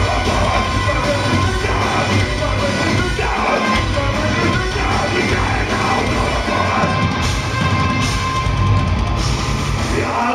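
Deathcore band playing live, heard loud from within the crowd: drum kit and distorted guitars with vocals.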